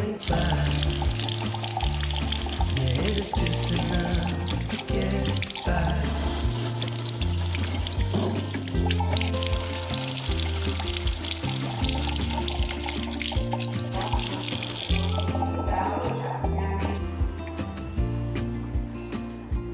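Kitchen sink tap running, water splashing over sweet potatoes as they are washed, until the tap is turned off about three-quarters of the way through. Background music plays throughout.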